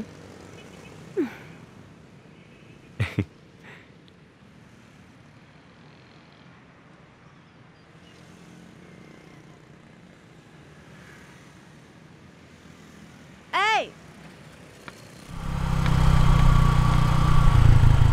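Motor scooter engine running at idle, coming in loud and steady about fifteen seconds in as the scooter pulls up.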